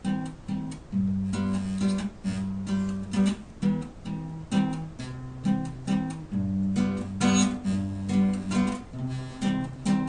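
Two acoustic guitars playing a song together: plucked melody notes and strums over a repeating bass line, with a steady beat.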